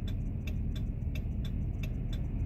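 Steady ticking, about four ticks a second, over the low rumble of an idling truck heard from inside the cab.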